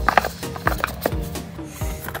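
Background music with several short clacks and knocks of cardboard phone boxes being handled and set down.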